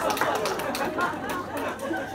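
Lively conversational speech, with voices overlapping in quick back-and-forth.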